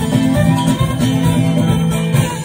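Amplified live Kurdish wedding dance music playing an instrumental passage between sung lines, with a steady repeating bass pattern under a melody line.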